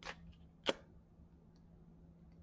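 Thick, coated oracle cards being handled as a card is moved from the front of the deck to the back. There is a soft slide of card stock, then one short, sharp snap of a card about two-thirds of a second in.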